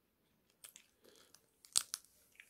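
Boiled crab being shelled and eaten: scattered sharp cracks and crunches, the loudest pair about three-quarters of the way through.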